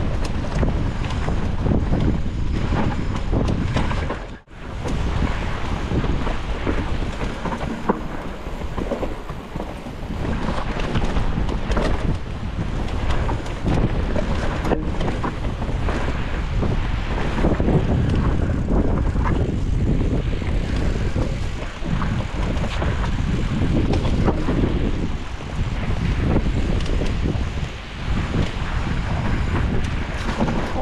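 Wind buffeting an action camera's microphone on a mountain bike riding singletrack, over rough tyre and frame rattle noise. The sound drops out briefly about four and a half seconds in.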